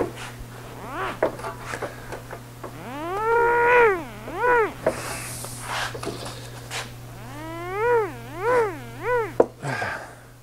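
A man's pitched, rising-and-falling groans of effort, one long one about three seconds in and a run of three shorter ones near the end, while he pushes a corner of the steel body shroud up by hand; small clicks and knocks from handling the panel, over a steady low hum.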